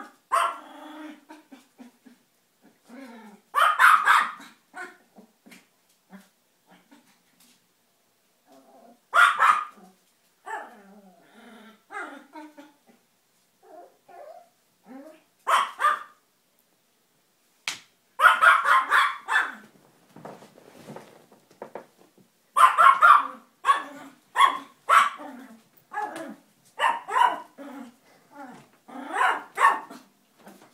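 A small toy poodle barking in short, sharp bursts of a few barks each, with pauses of several seconds between bursts early on; from about halfway the barks come more often and close together.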